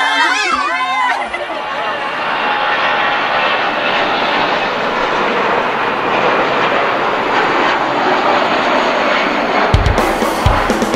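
A woman's high, wavering crying voice for about the first second. Then comes the steady, even noise of a jet airliner's engines, which runs until music with low drum thumps starts just before the end.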